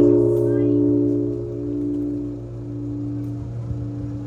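Large bronze Japanese temple bell (bonshō), struck by a swung wooden log just before, ringing on with a deep hum that slowly fades and throbs about once a second.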